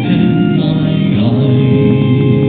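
Recessional hymn sung with instrumental accompaniment, the voices moving over held chords.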